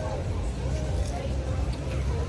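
Outdoor background ambience: a steady low rumble with faint voices in the background.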